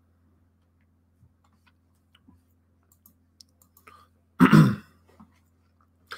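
A man briefly clears his throat about four and a half seconds in, after a few faint clicks over a low microphone hum.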